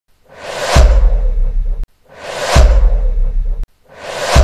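Cinematic whoosh sound effects: each a rising swish that swells for about half a second into a hit with a deep bass boom, then cuts off suddenly. Two full ones, with a third building near the end.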